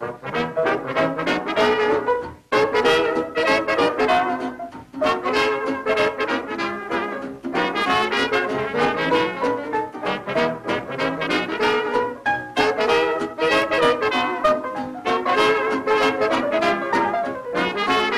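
A 1937 swing dance band plays an instrumental passage: trumpets and trombone lead over saxophones, piano, guitar, string bass and drums, in phrases broken by short pauses.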